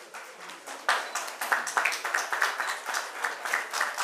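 Applause from a small audience: a quick run of hand claps starts about a second in and goes on steadily.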